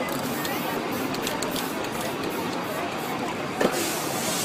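Short hissing bursts from an aerosol spray-paint can, and a single sharp knock about three and a half seconds in.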